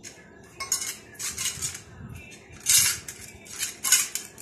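Stainless steel bowl clattering and scraping on a hard stone floor as kittens paw and push it, in irregular bursts; the loudest comes a little before three seconds in, with another sharp one near the end.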